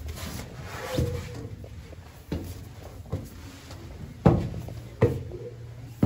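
Footsteps climbing stone spiral stairs: about five heavy steps roughly a second apart, the loudest about four seconds in, in a small echoing stairwell.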